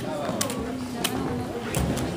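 Poker chips clicking as they are handled and stacked: about four short, sharp clacks, over low background talk.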